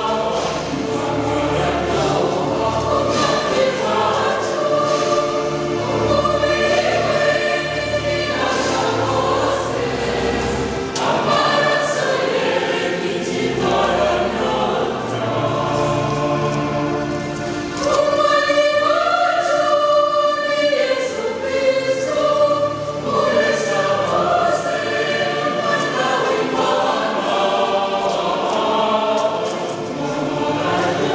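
Church choir singing a hymn in several voices, growing louder a little past halfway.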